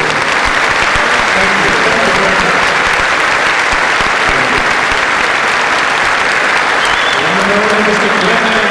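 A large audience applauding steadily in a big hall.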